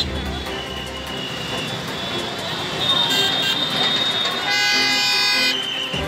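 Busy street noise with crowd voices, and a vehicle horn honking once for about a second near the end.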